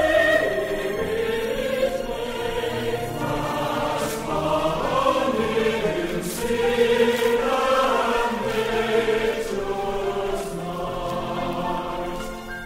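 Sacred choral music from a vinyl LP: a choir singing sustained, slowly moving chords over instrumental accompaniment.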